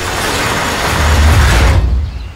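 Sound effect of a metal roller shutter door rolling: a loud, noisy rush with a low rumble, lasting about two seconds and fading near the end.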